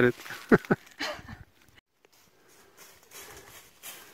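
Two short voice sounds about half a second in, then faint rustling footsteps of a runner through dry fallen leaves in the second half.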